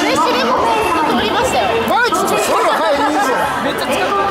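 Chatter of many spectators' voices overlapping at once, several talking and calling out together with no one voice leading.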